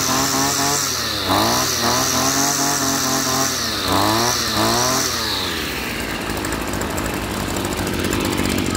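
Small 26 cc air-cooled two-stroke brush cutter engine running just after starting, revved up and let back down about three times, then settling to a steadier, lower run for the last couple of seconds.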